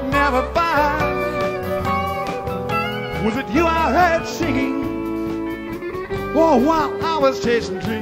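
A live rock band plays an instrumental passage from a soundboard recording. An electric lead guitar bends notes over bass and drums, with the longest bends a little past the middle and again near the end.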